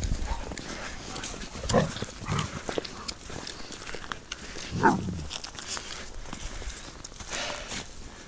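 Footsteps crunching through thin snow, a steady patter of short clicks, with three brief dog vocalizations that fall in pitch, the loudest about five seconds in.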